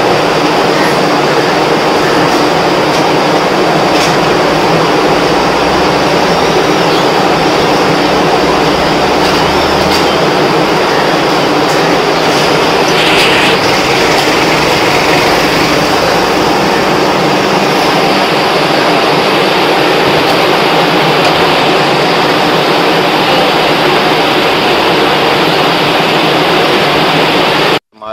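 Waste segregation machine running, its motor and inclined conveyor belt making a loud, steady mechanical noise that cuts off suddenly near the end.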